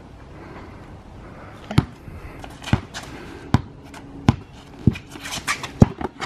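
A basketball dribbled on a concrete driveway: six single bounces about a second apart, starting roughly two seconds in.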